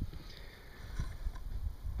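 Low, uneven rumble of wind buffeting the microphone, with a faint click about a second in.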